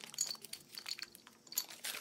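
A steel pulley's swivel eye and small metal hardware being handled, making light, scattered metallic clinks and ticks.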